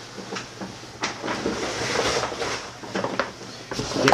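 A waterproof coated-nylon roll-top bag rustling and scraping as it is picked up and handled, with a few sharp knocks.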